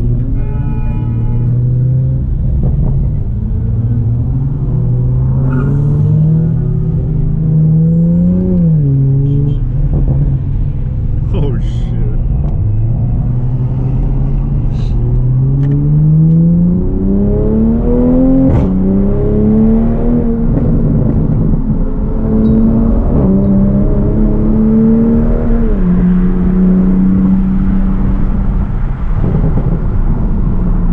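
Toyota GR Supra MK5's turbocharged inline-six accelerating through the gears: the engine note climbs, then drops with an upshift about nine seconds in, again about nineteen seconds in and once more about twenty-six seconds in, before holding a steady pitch at cruising speed.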